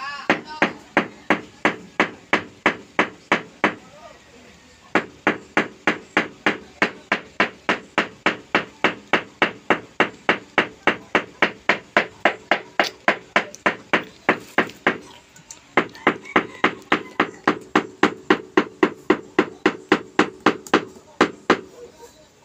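A mallet tapping a large floor tile down into its wet mortar bed, bedding it level: quick, even taps at about two or three a second, each with a short ring. The tapping stops briefly about four seconds in and again about fifteen seconds in, then carries on.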